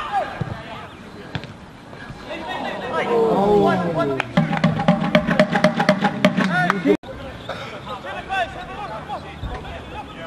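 Voices shouting and calling at the side of a football pitch, loudest in the middle stretch, with a long held, almost sung call among them. The sound cuts out suddenly for an instant about seven seconds in.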